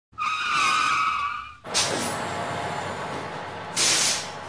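Vehicle sound effect for a logo intro: a tire screech lasting about a second and a half, cut off by a sudden rush of noise that settles into a steady hiss, then a short loud hiss of air brakes near the end.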